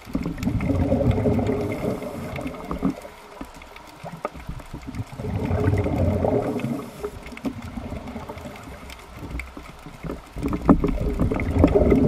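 Scuba regulator exhaust bubbles rushing and gurgling underwater as a diver breathes out, in three bursts about five seconds apart with quieter gaps between breaths.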